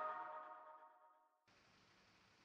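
The last chord of an electronic logo jingle, several steady tones, fading out over about the first second and leaving near silence.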